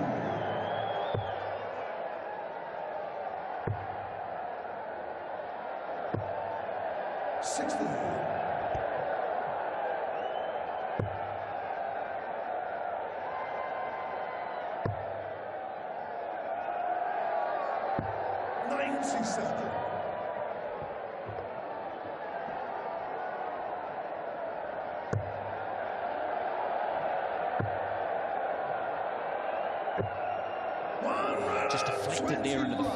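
Steady arena crowd murmur, with sharp knocks of darts landing in a bristle dartboard every few seconds as each player throws. There are two short louder crowd outbursts, about a third of the way in and around two-thirds of the way in.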